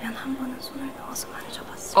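A woman's voice speaking softly, close to a whisper, in a few short, quiet phrases of film dialogue.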